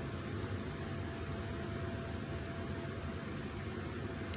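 Steady background hiss with a faint low hum and a thin steady tone: room noise, with no distinct event.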